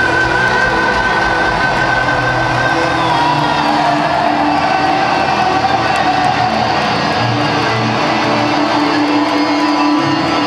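Heavy metal band playing live through a large arena PA: electric guitars hold long, sustained notes that slide slowly in pitch, over the rest of the band.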